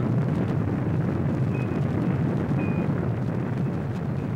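Saturn V rocket's five F-1 first-stage engines at full thrust during liftoff: a steady, loud, deep rumbling roar with a crackling edge as the rocket climbs away.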